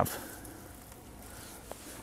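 Faint rubbing of a damp microfiber towel wiping a car's front bumper with rinseless wash solution, with one small click near the end.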